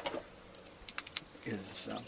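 Four quick, light clicks close together, about a second in, from small hand-held gear being worked at a box.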